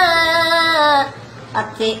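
A high solo voice singing a Punjabi Sufi kalam, holding a long wavering note that breaks off about a second in, then starting a new phrase near the end.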